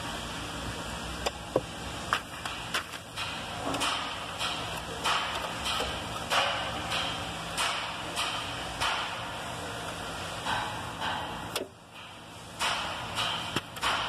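Plastic wiring connectors and harness being handled behind a car's dash radio: irregular scraping and rustling with a few small clicks as the connector locks are gripped and released, over a steady low hum.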